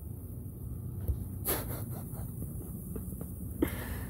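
Low steady hum of the recording's room tone, with a faint short rush of noise about a second and a half in and a soft click near the end.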